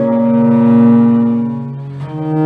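Bass viola da gamba playing one long bowed note that swells about a second in and fades near the end.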